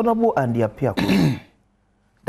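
A man talking, then clearing his throat about a second in, followed by a brief pause.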